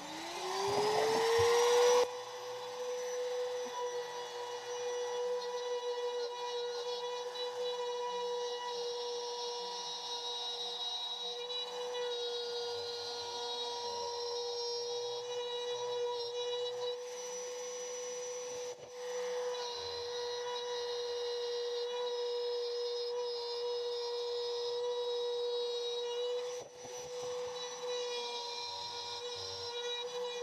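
Compact trim router switched on and spinning up to speed over about two seconds. It then runs with a steady high whine while routing a blank of African padauk, with two brief dips in loudness later on.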